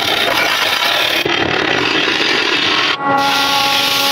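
Wood lathe turning a large wooden cylinder: a turning tool cutting the spinning wood with a dense, hissing scrape, then, after an abrupt change about three seconds in, sandpaper rubbing on the spinning cylinder over a steady set of tones.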